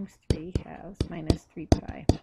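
Soft, half-whispered speech, broken up, with sharp clicks and taps between the words, like a stylus tapping a tablet screen while writing.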